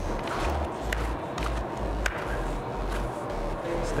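Playing cards being dealt onto a felt blackjack table, giving a few light, sharp clicks over steady room noise with a low hum.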